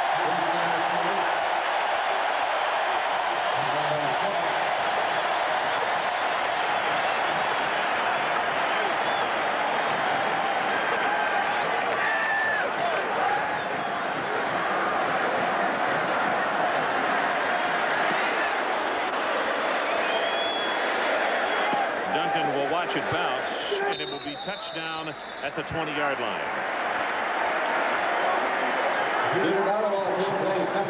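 Large stadium crowd cheering steadily in a sustained ovation for the home team's defense after a stopped run. The noise thins out briefly near the end.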